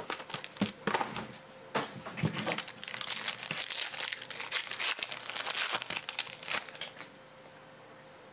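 Silver foil wrapper of a Topps Inception baseball card pack crinkling and tearing as it is peeled open by hand, in irregular sharp crackles that die down about seven seconds in.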